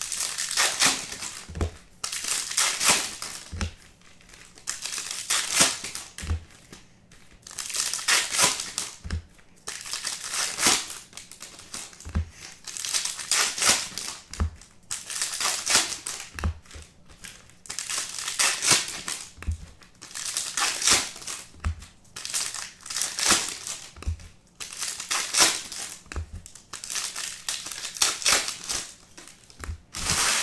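Foil trading-card pack wrappers (Bowman Chrome hobby packs) being torn open and crinkled by hand, one pack after another. Repeated bursts of crinkling come every two seconds or so, each with a soft knock.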